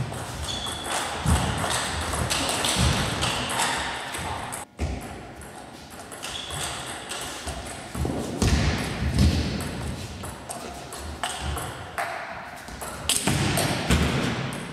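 Table tennis ball clicking off rackets and table in quick rallies, mixed with heavier thumps of the players' footwork.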